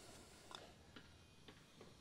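Near silence, with four faint ticks about half a second apart.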